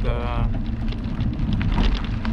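Wind buffeting a handlebar camera's microphone while riding a bicycle: a steady low rumble with a rushing hiss over it, after one spoken word at the start.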